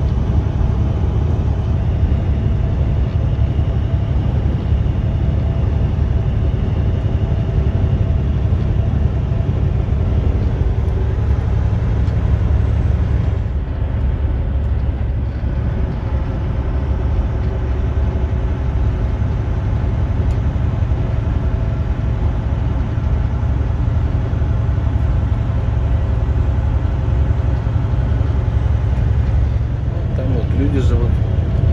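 Steady low rumble of a semi-truck's engine and tyres at highway speed, heard from inside the cab.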